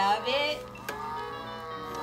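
A VTech Sit-to-Stand Learning Walker's electronic play panel sounding off as its buttons are pressed: a sung or spoken toy voice at first, then a click about a second in, followed by held electronic tones.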